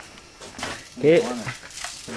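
A man's voice says a short 'kay' about a second in, over faint scattered clicks and rustling of handling noise.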